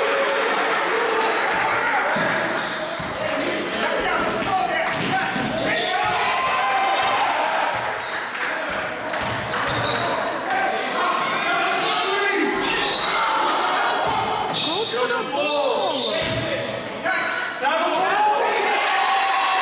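Live indoor basketball game: the ball bouncing on the court, sneakers squeaking now and then (most clearly near the end), and players and the bench calling out, all echoing in the large gym.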